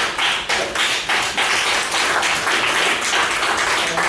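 Audience applause: many hands clapping at once, thick and steady.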